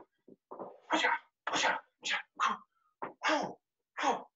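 A man's short, sharp hissing exhalations and clipped shouts, about two a second, timed to his punches and blocks while shadow boxing.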